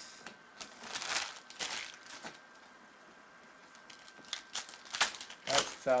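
Panini Prizm trading cards handled and laid down on a table: a few short rustling swishes and light card slaps, in two bursts.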